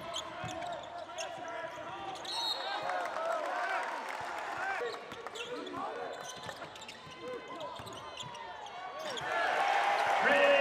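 Basketball shoes squeaking in quick, short chirps on a hardwood court, mixed with a basketball being dribbled, in a large arena.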